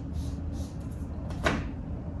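Whiteboard eraser wiping the board in soft swishes, then a single sharp tap about one and a half seconds in as the marker or eraser meets the board.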